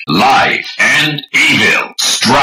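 Three short, loud bursts of processed, voice-like electronic sound effects from a Desire Driver transformation belt, each about half a second long with gliding pitch.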